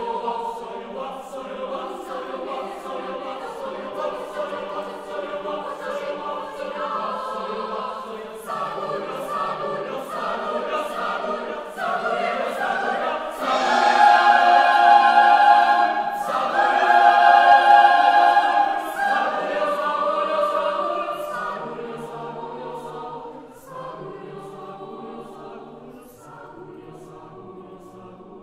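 Chamber choir singing a cappella in sustained chords, building to its loudest in two swells about halfway through, then falling away to a quieter close.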